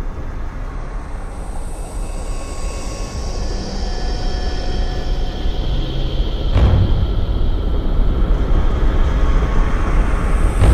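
Dark cinematic soundtrack drone: a deep steady rumble with thin high sustained tones coming in over it, slowly growing louder. A sudden boom hits about six and a half seconds in.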